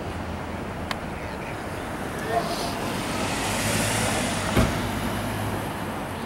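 Street traffic noise: a vehicle passes and swells in the middle over a steady low hum. A sharp thump comes a little before the end.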